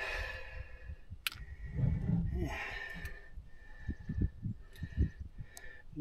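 A man sighing and breathing out as he works, with cloth rubbing against the microphone, a sharp click about a second in, and a few soft bumps in the second half.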